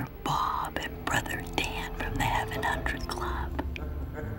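A woman whispering a few words close to another person.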